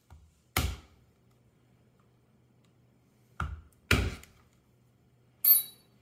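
Number one leather round hole punch being struck to drive it through a belt strap: four sharp knocks, one about half a second in, two close together a little past three seconds, and a brighter knock with a short metallic ring near the end.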